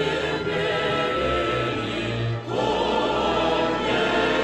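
Mixed choir singing held chords with a string orchestra. A brief break comes about two and a half seconds in, then a new, higher chord.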